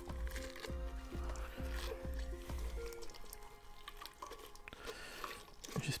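Soft background music with held notes that stops about halfway through. Under it, wet squishing and dripping as a tied shibori cloth bundle is lifted by a rubber-gloved hand out of a pot of dye bath.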